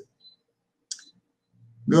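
A short click about a second in, with a fainter tick just before it, in an otherwise silent gap; a voice begins near the end.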